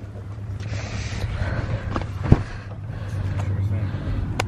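Handling noise in a car's back seat: a rustle, then one sharp knock about two seconds in, over a steady low hum.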